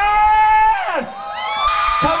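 A high-pitched excited vocal whoop, held steady for under a second and then falling off, followed by more shouting from the crowd.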